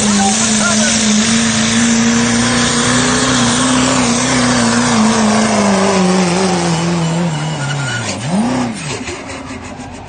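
A 2.6-class diesel pickup truck runs at full throttle under pulling load, its tyres spinning in the dirt. The engine note holds high for about five seconds, then sinks steadily as the truck bogs down and the pull ends. Near the end there is one quick rev up and back down, and then the sound falls away.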